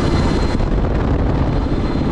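Steady, loud rush of wind and engine noise at the open door of an aircraft in flight.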